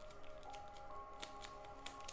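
Tarot cards being shuffled by hand: faint, scattered clicks of card against card. Soft background music with long held notes plays underneath.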